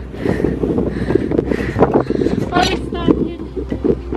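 Wind buffeting the camera microphone in a steady low rumble, with a short burst of a woman's voice about two and a half seconds in.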